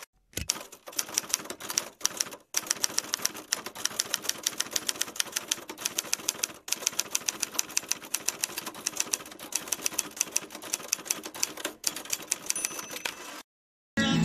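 Typewriter sound effect: a fast, even run of keystroke clicks, several a second, with two short breaks, cutting off abruptly near the end.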